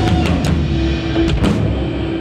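Live rock music with electric guitar and drums: a few sharp drum hits over a held guitar note.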